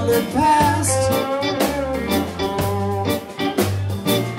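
Live blues band playing: electric guitar over bass guitar and a drum kit, with a steady beat.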